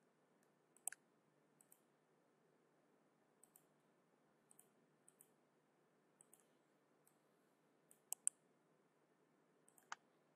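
Faint, sharp clicks of a computer mouse in near silence: one about a second in, a quick pair near the end, and one more just before the end.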